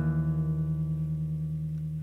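Music: an acoustic guitar chord left ringing and slowly dying away over a steady low note, between strums.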